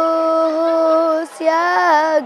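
A boy singing solo with no accompaniment, holding one long steady note for over a second, then breaking off and starting a new phrase that slides down in pitch.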